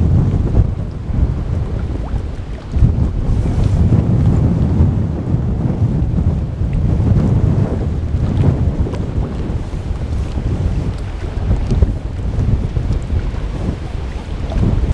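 Wind buffeting the camera's microphone: loud, gusting low rumble.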